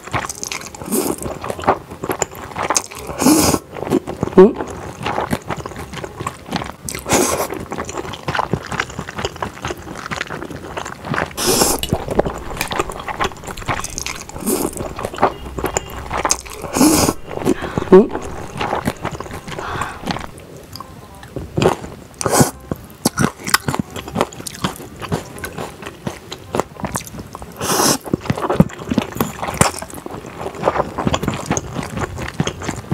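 Spicy stir-fried instant noodles slurped up with chopsticks again and again, a slurp every few seconds, with chewing and mouth sounds in between.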